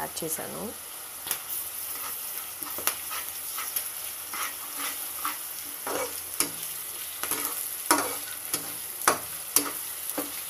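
Chopped green capsicum sizzling in hot oil in a pan while a slotted spatula stirs it, scraping and knocking against the pan at irregular moments over a steady frying hiss.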